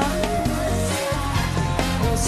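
Live band playing pop music, with drums, bass and sustained instrumental notes, no singing.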